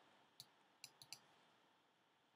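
Faint computer mouse clicks, four in the first second and a half, the last three close together, over quiet room tone.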